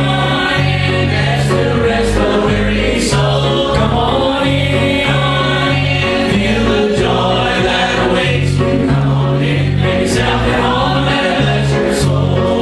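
Small mixed church choir singing a gospel song in harmony over an instrumental accompaniment with a moving bass line.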